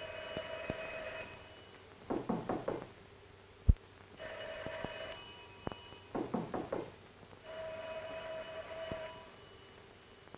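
An old telephone bell ringing three times, each ring about a second long. Between the rings come two shorter, lower wavering bursts, and a single sharp click sounds a little over a third of the way in.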